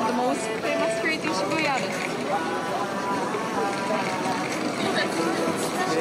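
Busy pedestrian shopping-street ambience: voices of passers-by talking over one another, with music playing and a steady bed of street noise.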